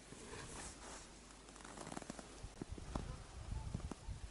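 Faint rustling of clothing and camera handling noise, with irregular soft knocks and low thumps coming more often in the second half as the camera is moved.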